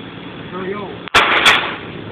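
A wooden dresser being smashed apart: a sudden, very loud crash about a second in, lasting about half a second, with a second hit inside it.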